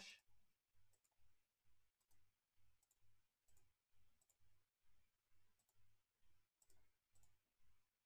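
Near silence: room tone with a faint, even ticking about twice a second over a low hum.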